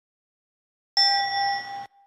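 A single bright bell ding sound effect starts suddenly about a second in, rings for just under a second and cuts off abruptly.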